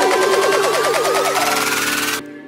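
Electronic future bass music in a build-up: fast repeating hits under a steadily rising synth sweep.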